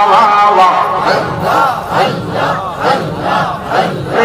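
Men chanting jalali zikr (Sufi dhikr) together in a fast, forceful rhythm through a loud PA system, about two rising-and-falling chants a second.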